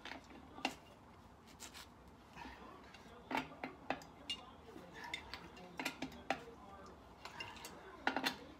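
Irregular faint metallic clinks and taps of a steel lug wrench being fitted onto the lug nuts of a minivan's rear wheel.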